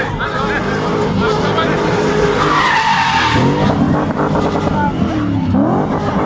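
BMW E30 'box' being spun: its engine revs rise and fall as the tyres squeal against the tarmac, loudest a few seconds in.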